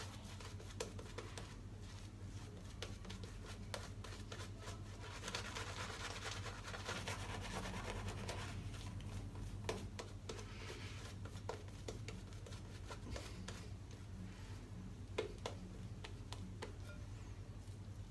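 Shaving brush being worked over a lathered face: a faint, steady bristly scrubbing with many small crackles, a little stronger for a few seconds in the middle, over a low steady hum.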